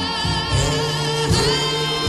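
A slow 1950s doo-wop vocal group ballad playing: a high lead voice holds notes with a wavering vibrato over group harmonies and a bass line.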